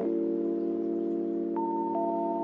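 Background music: a soft held chord of steady notes, with a higher note entering about one and a half seconds in.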